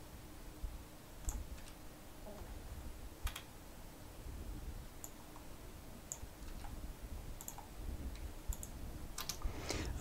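Faint, irregular clicks of a computer mouse and keyboard, about a dozen spread out, with a quicker run of clicks near the end.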